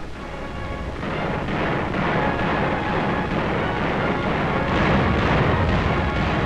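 Massed, continuous rapid fire from a line of half-track heavy machine-gun mounts shooting together, growing louder after the first couple of seconds.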